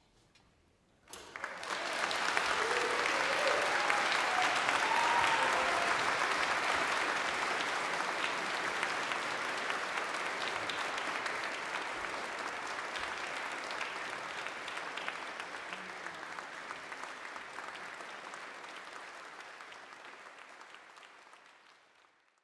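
Concert hall audience applauding: after a brief hush the clapping breaks out suddenly about a second in, swells over the next couple of seconds, then slowly fades.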